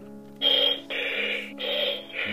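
Buzz Lightyear Signature Collection talking toy playing an electronic sound effect through its small speaker: three short bleeps of about half a second each, starting about half a second in, over a steady low electronic hum.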